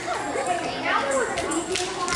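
Children's voices chattering and calling out over one another, with no clear words.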